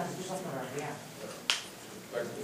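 A man talking quietly, then a single sharp click about one and a half seconds in.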